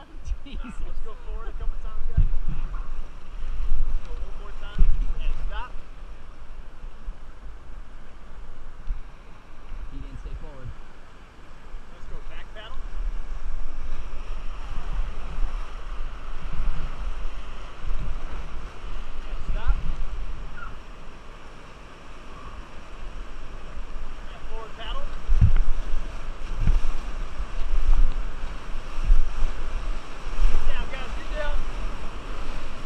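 Rushing river water with wind buffeting a helmet-mounted action-camera microphone, a steady rumble with a few low thumps. The water grows louder near the end as the raft reaches whitewater rapids.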